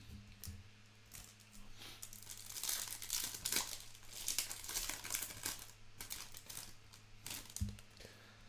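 Foil trading-card pack being torn open and crinkled by hand: a run of crackling rips and crinkles lasting several seconds, over a faint steady low hum.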